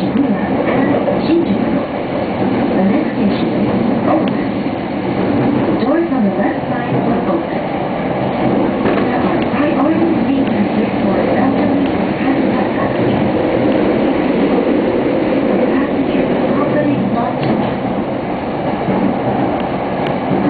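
JR East E231 series electric train running at speed, its steady rumble heard from inside the passenger car.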